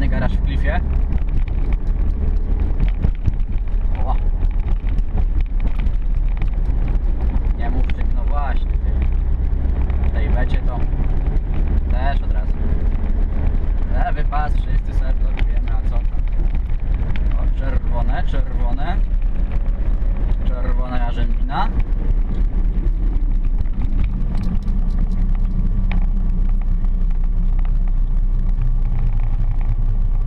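Car engine and road noise heard inside the cabin while driving, a steady low drone, with short snatches of a voice every few seconds.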